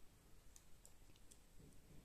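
Near silence with a few faint clicks of metal double-pointed knitting needles as stitches are worked.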